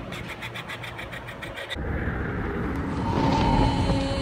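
Intro sound design: a fast ticking rattle, about eight ticks a second, cuts off sharply after a second and a half. A rising rumble then swells into held, sustained music tones.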